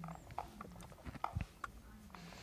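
Faint, scattered clicks and taps of a screwdriver tightening a small screw in the metal clamp that holds a UV tube, with a soft thump about a second and a half in.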